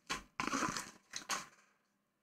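Cardboard box and paper envelopes being handled: a few short rustles and scrapes, stopping after about a second and a half.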